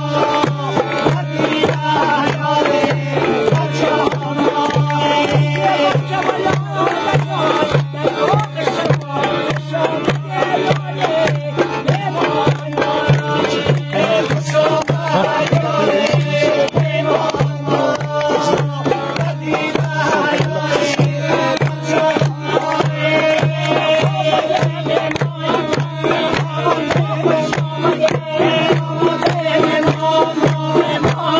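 Badakhshani folk dance music: a fast, steady hand-drum beat under a melody, over a constant low tone.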